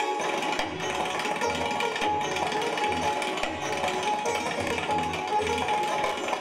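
Live Hindustani classical sitar and tabla playing together. The sitar's plucked melody runs over busy tabla strokes, with frequent deep bass strokes from the bayan.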